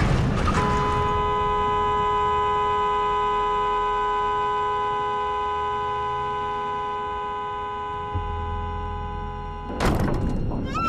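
A car horn sounding in one long, steady two-tone blast for about nine seconds, slowly fading, over a low rumble. A sudden loud hit near the end cuts it off.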